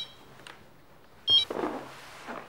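A mobile phone's electronic ringtone sounds once more in a short high burst about a second and a half in, then cuts off.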